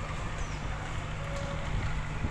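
Steady low rumble of a moored passenger speedboat's engine running at idle, mixed with wind on the microphone.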